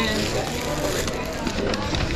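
Plastic carry-out bag crinkling and rustling as it is gripped by the handles and lifted, over the chatter of voices around it.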